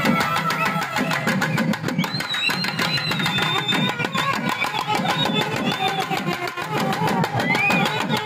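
Procession band music: a reed wind instrument plays a wavering, ornamented melody over a dense, steady beat on a thavil drum.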